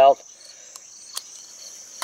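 Crickets chirring in a steady high-pitched drone, with two light clicks a little under and just over a second in as the plastic filter parts of a small portable vacuum cleaner are pulled apart by hand.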